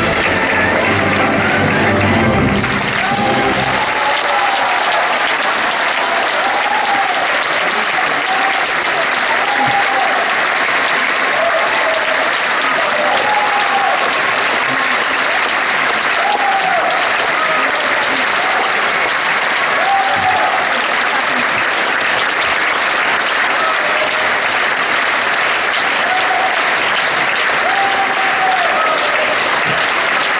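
A theatre orchestra plays the closing bars of a ballet variation and stops about four seconds in. Sustained audience applause follows, with voices calling out from the audience now and then.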